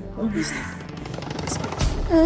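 Background film music with a person's short strained vocal sounds, a groan or whimper rising in pitch early on; a low thump near the end.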